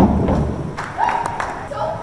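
A single heavy thump at the very start, its low boom dying away over about half a second.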